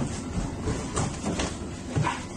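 Storm noise aboard a cargo ship in heavy seas: wind and waves breaking against the hull as a steady rush, with a few sharper hits.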